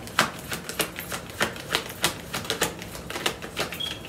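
Tarot cards being shuffled by hand: a quick, uneven run of sharp clicks and snaps, about four or five a second.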